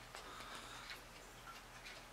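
Quiet room tone with a low steady hum and a few faint, irregular ticks.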